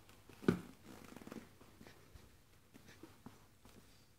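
Baby mouthing and gnawing on a whole apple, with small grunting and breathy noises. A brief, louder sudden sound comes about half a second in.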